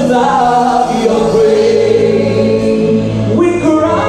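A woman singing a gospel worship song into a handheld microphone, holding long notes, with other voices singing along.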